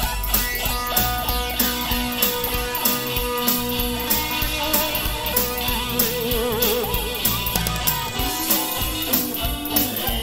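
Instrumental break in a rock-blues song: an electric guitar plays a lead line of held and bent notes, with a wide vibrato on a sustained note a little past the middle, over bass and a steady beat of about two drum hits a second.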